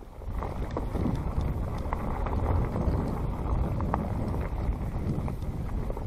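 Wind buffeting the microphone of a handlebar camera on a fast mountain-bike descent, with the tyres rolling over dirt and dry leaves and scattered clicks and rattles from the bike. It grows louder a moment in as speed picks up.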